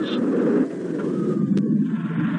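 Steady low rumble of a roller coaster train running fast on its track. About one and a half seconds in, the sound turns duller as its high end drops away.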